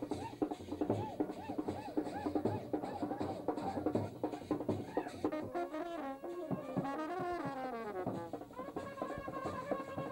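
Indian wedding brass band playing: drums beat steadily, and trumpets and trombones take up a melody about halfway through.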